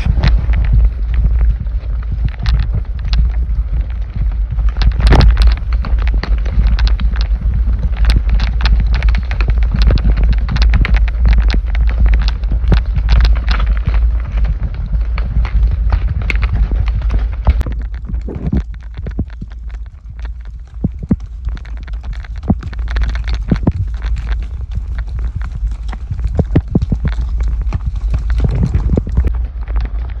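Horse's hooves clopping irregularly on dirt and rocky trail under a rider, heard over a heavy low rumble of wind and movement noise on the microphone. The sound drops briefly about two-thirds of the way through.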